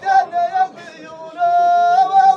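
A man singing solo in a high, strained voice: two short phrases, then a long, steady held note starting about one and a half seconds in.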